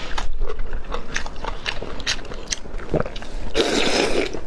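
Close-miked eating sounds: wet clicks and smacks of a person chewing food soaked in chili oil. Near the end, a louder, longer rush of noise comes as she bites into another piece.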